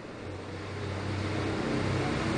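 A low, steady engine hum under a background hiss, slowly growing louder.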